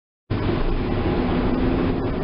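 Steady engine and road noise inside a moving car's cabin, starting abruptly about a third of a second in, with a faint low hum running through it.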